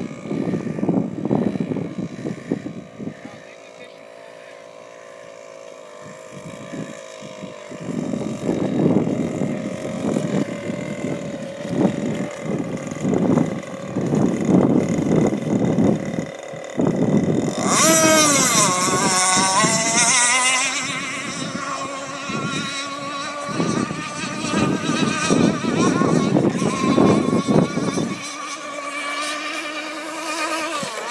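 High-pitched engine whine of a small racing speedboat running laps on open water, the pitch climbing gradually. The loudest moment is a close pass about 18 seconds in, with the whine swooping down and back up. Wind buffets the microphone throughout.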